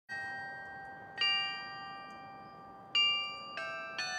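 Carillon bells playing a slow melody, one note at a time. Four notes are struck, each ringing on and slowly dying away.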